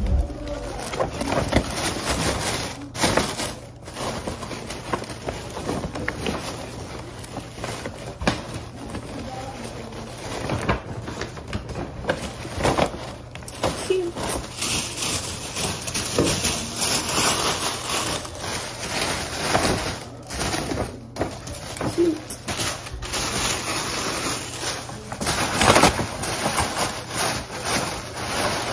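Tissue paper crinkling and rustling as it is handled and stuffed into paper gift bags, on and off with brief pauses.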